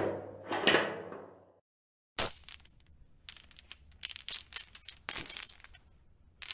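Door-unlocking sound effects: a heavy bar scraping as it slides back, a sharp metallic clank about two seconds in, then chains rattling and jingling through the second half.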